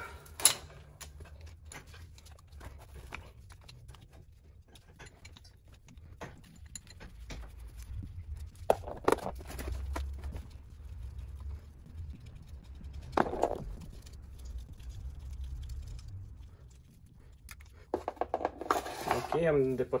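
Wrench turning and clicking on the cylinder base nuts of a KTM SX 85 two-stroke engine, with scattered light metal ticks and a few sharper knocks, the loudest a little before halfway and again about two-thirds in, over a low rumble.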